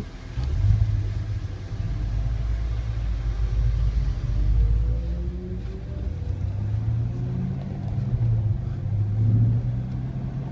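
C7 Corvette Stingray's 6.2-litre LT1 V8 pulling hard at track speed, heard inside the cabin as a low rumble. Its pitch climbs and falls with throttle and shifts, peaking about four and a half seconds in and again near the end.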